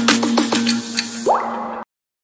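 Logo-intro jingle: a held synth note under a quick run of short, falling, drip-like blips, then a rising swoosh a little past a second in. The sound cuts off suddenly shortly before the end.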